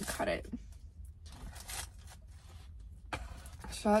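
Plastic knife and fork scraping faintly as a chocolate-topped Boston cream doughnut is cut on its paper in the box, over a low steady rumble.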